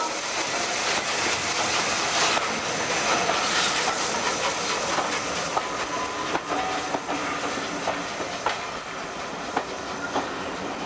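A Bulleid West Country class steam locomotive hisses steam as it passes, and then its coaches roll by, the wheels clicking over the rail joints with a few short squeals.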